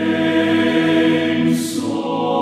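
Men's a cappella chorus (TTBB) singing a sustained chord in close harmony. A short sibilant hiss comes about one and a half seconds in, as the voices move to a new chord.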